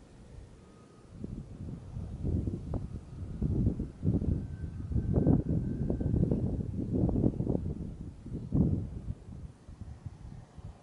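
Wind buffeting the microphone: an irregular, gusting low rumble that builds about a second in and dies away near the end.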